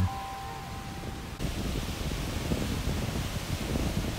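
Wind buffeting the microphone over the steady wash of waves breaking on a rocky shore, with the last held notes of music dying away in the first second.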